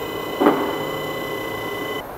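Steady mechanical whine like a small electric motor running, with a brief knock about half a second in.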